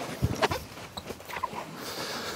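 A person climbing into the back seat of a car through the open rear door: shuffling and handling noise with a few soft knocks, the clearest about half a second in.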